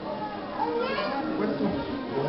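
Indistinct talking from several people, with children's voices among them.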